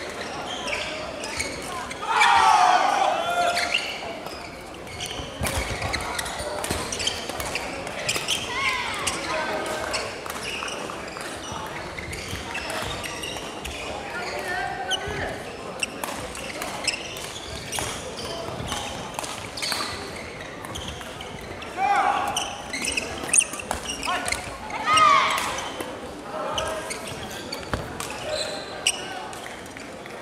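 Badminton play in a large sports hall: scattered sharp clicks of rackets striking shuttlecocks and shoes on the wooden court, over unintelligible chatter and players' calls, with louder shouts about two seconds in and twice near the end.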